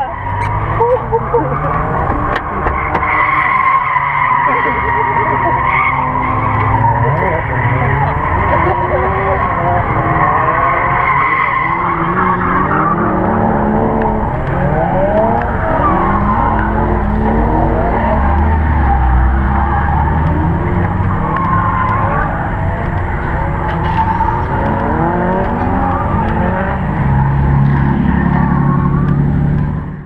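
Supercharged Mk1 Mazda MX-5's four-cylinder engine revving hard while drifting, tyres squealing, for roughly the first twelve seconds. After that, people's voices come over a low steady rumble.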